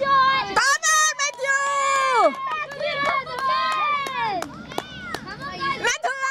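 Children's voices shouting and calling out excitedly, with several long, high-pitched drawn-out calls that fall in pitch at the end.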